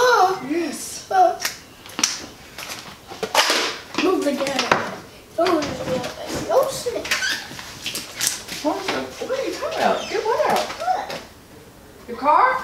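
Speech: a young child and an adult talking, with a few short sharp clicks and knocks between the words.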